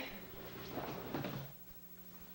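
Thuds and cloth rustling as an aikido partner is thrown down onto the dojo mat, loudest a little under a second in, over a steady low hum.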